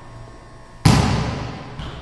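Sound effects of an animated logo ending: a sudden heavy, boom-like hit about a second in that dies away over the next second, with a smaller hit near the end.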